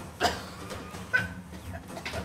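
A woman's short, strangled cries as she struggles against a hand pressed over her mouth: two sharp outbursts, the louder about a quarter second in with falling pitch, the other just past a second.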